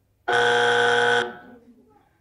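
Game-show buzzer: one steady, harsh buzz about a second long that cuts off with a short fading tail.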